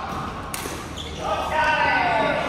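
A single sharp crack of a badminton racket hitting a shuttlecock about half a second in. From about a second and a half, a voice calls out loudly, its pitch falling.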